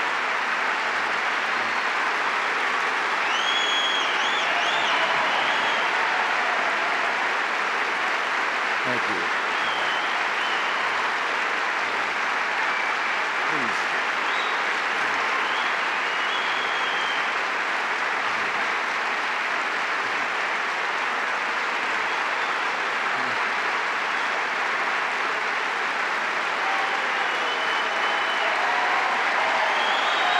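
Sustained applause from a large audience, steady throughout, with a few high whistles in it.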